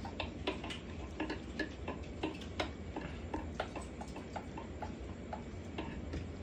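Pencil tapping and scratching on notebook paper as letters are written: light, unevenly spaced clicks about four a second, with a low steady hum underneath.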